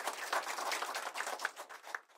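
Audience applauding, many hands clapping at once, thinning out near the end.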